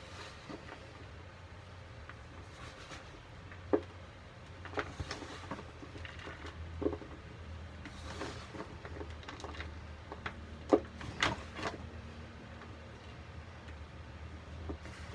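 Gloved hands crumbling and squeezing a crumbly, chalky green powder that has not yet fully dried in a bucket: irregular soft crunches and taps, the sharpest about four seconds in and near eleven seconds.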